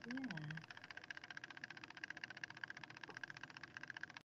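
A brief murmured voice sound at the start, then a faint, fast, even buzzing crackle of electronic noise on the video-call audio.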